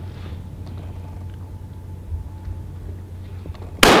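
A single Walther PDP pistol shot near the end, sharp and very loud, with a long echo ringing off the indoor range. Before it there is only a steady low hum.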